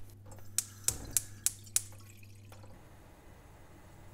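Thin liquid poured from a glass bottle into a pan, with about five sharp drips or splashes in the first two seconds, then fading to a faint hiss.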